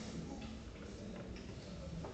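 Billiard balls on a carom table clicking a few times after a cue stroke, as the struck ball knocks against the cushions and another ball.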